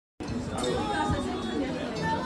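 Several people talking at once around a table, voices overlapping in chatter with no clear words.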